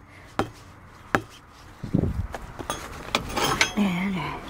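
Steel lug wrench pounding the tire's bead next to the rim: several dull knocks about half a second to a second apart, the loudest about two seconds in. The blows push the bead back to reseat it where it is leaking air.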